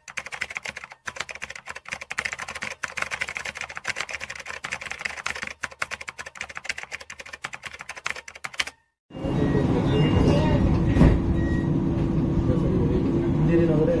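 Typewriter key-clicks sound effect, rapid and uneven, for about nine seconds, stopping abruptly. Then comes the steady rumble of an MRT train running, with a steady hum, and an onboard "next station" announcement beginning at the very end.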